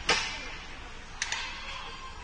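Hockey stick-and-puck impacts on the rink: a sharp crack that echoes through the arena, then two quick clicks about a second later.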